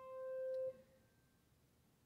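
A single piano note on a Shigeru Kawai piano, held and fading, then cut off by the damper about two-thirds of a second in, leaving near silence.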